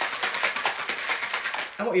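Ice rattling inside a stainless-steel cobbler cocktail shaker shaken hard by hand, a fast, even clatter of ice against metal as the drink is chilled. The rattling stops just before the end.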